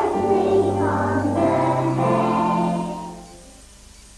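Children's choir singing a Christmas carol in long held notes, the sound fading away about three seconds in.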